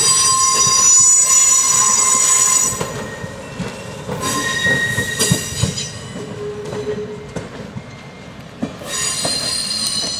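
Steel wheels of slow-moving railroad passenger coaches squealing against the rails, a high shrill squeal in several overlapping tones. It dies down about three seconds in, comes back briefly around the middle and again near the end, with scattered wheel clicks and clunks in between.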